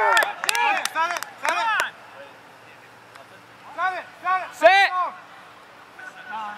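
Men's wordless shouts and exclamations on the field, in a cluster during the first two seconds mixed with a few sharp hand claps, then a lull, then another burst of short shouts about four to five seconds in.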